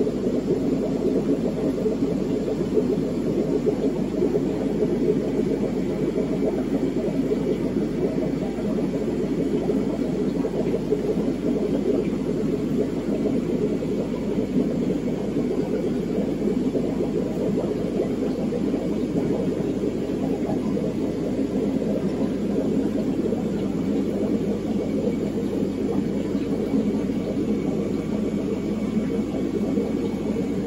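Steady low hum and rush of fish-room aquarium equipment: air pumps driving the tanks' sponge filters, along with water filtration. It stays level with no breaks.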